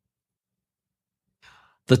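Near silence in a pause, broken about one and a half seconds in by a short, faint in-breath, just before a voice begins speaking again near the end.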